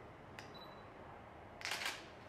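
A faint sharp click about half a second in, then a louder, short burst of high-pitched noise lasting about a third of a second near the end, over low room hiss.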